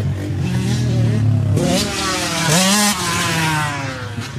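Yamaha Raptor 700 sport quad's single-cylinder four-stroke engine idling, then revving up about one and a half seconds in as the quad pulls away, its pitch rising and then falling off near the end.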